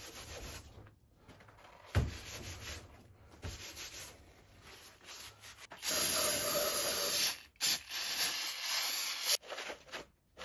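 A paper shop towel rubbed over wet sandpaper, followed from about six seconds in by two long hisses of an aerosol spray can sprayed onto a freshly resurfaced aluminium cylinder head.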